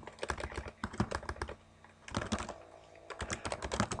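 Computer keyboard typing: quick runs of key clicks in three bursts, with short pauses between them.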